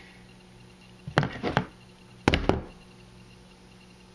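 Two short bouts of knocking and clatter, about a second in and again around two and a half seconds, as a hand crimping tool and small connector parts are handled and set down on a workbench. A faint steady hum lies underneath.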